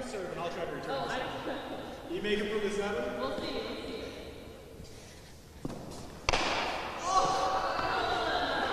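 Two sharp knocks about half a second apart, a hard pala ball struck with a wooden paddle and hitting the fronton court, echoing in the large walled hall.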